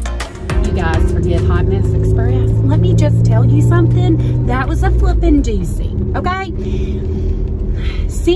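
Steady low engine and road rumble inside a moving Jeep while a woman talks, with background music under it.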